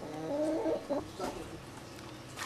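Chickens at a broiler farm clucking, most during the first second, then fading to a faint background.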